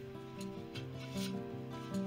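Hand sanding the scarfed end of a wooden strip with sandpaper: a few short rubbing strokes over background acoustic guitar music.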